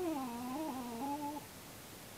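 Miniature schnauzer howling from inside its crate, the separation howling of a dog left home alone. It gives one wavering howl of about a second and a half, dropping in pitch at the start.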